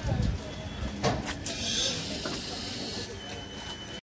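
Express passenger train at a station platform, with a low rumble from the coaches and a sharp knock about a second in. A hiss follows from about one and a half to three seconds in, with voices on the platform underneath.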